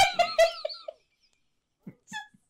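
A woman laughing hard: a quick run of high-pitched laugh pulses that fades out about a second in, followed by a pause.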